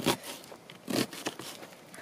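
Kitchen knife chopping an onion on a plastic chopping board: two short knocks about a second apart.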